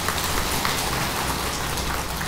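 An audience of seated monks applauding, many hands clapping at once in a dense, steady patter.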